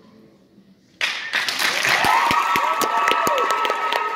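The song's last note fades out faintly, then about a second in a concert audience breaks into loud applause with cheering voices and whoops.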